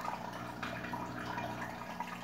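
Hang-on-back aquarium filter running: water trickling and dripping back into the tank over a steady low hum.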